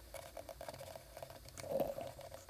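Computer mouse clicking: a run of light, quick clicks, several a second.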